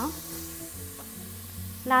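Onion and masala mixture sizzling in a pressure cooker as it is stirred with a spatula, over soft low background music.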